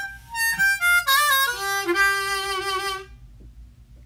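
Hohner ten-hole diatonic harmonica played: a quick run of short notes, then held notes sliding down to a low note that stops about three seconds in.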